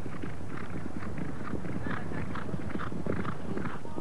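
Hoofbeats of galloping racehorses on turf, a steady rhythm of hoof strikes a few times a second.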